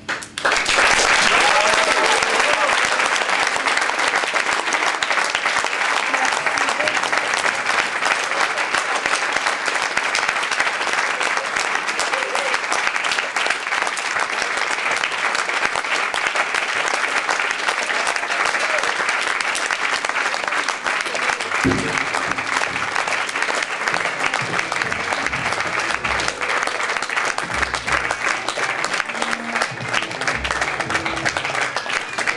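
Audience applause that breaks out suddenly and keeps up steadily, with some cheering voices in the crowd.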